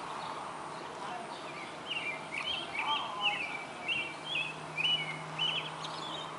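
A bird singing a run of quick, chirping notes, starting about two seconds in, over steady outdoor background noise. A low, steady hum joins about four seconds in.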